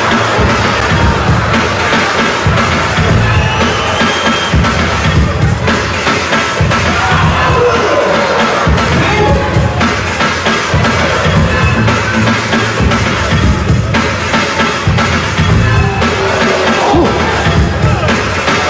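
Hip-hop DJ music for a breaking battle, with a heavy repeating beat, over a cheering arena crowd.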